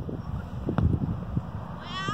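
A football kicked once, a short thud about a second in, over wind buffeting the microphone. Near the end comes a short, high, wavering call.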